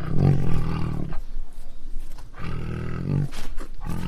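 Tiger roaring twice, low and rough, each roar about a second long, with a third starting just before the end.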